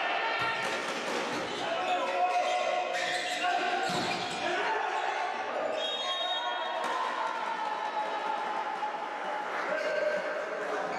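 Volleyball rally: the ball struck several times with sharp knocks, the loudest about four seconds in, while players shout to each other. Everything echoes in a large sports hall.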